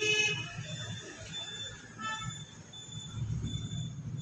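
A short horn-like toot, loudest right at the start and fading within about half a second, then a second, shorter toot about two seconds in, over a low steady hum.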